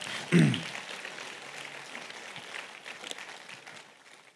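Congregation applauding, the clapping dying away over the few seconds, with a brief voice sound just after the start.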